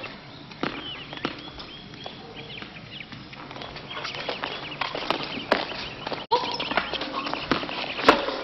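Tennis rally: rackets striking the ball, several sharp hits irregularly spaced a second or more apart, with short high squeaky chirps in between.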